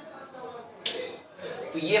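A single sharp click a little before one second in, during a pause in a man's speech.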